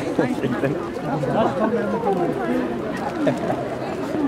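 A large crowd chattering: many voices talking at once and overlapping, with no single voice standing out.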